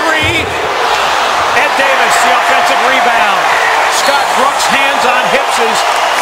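Live basketball game sound: sneakers squeaking on the hardwood, the ball bouncing and a slam at the rim as a missed shot is followed in, over arena crowd noise that swells about a second in.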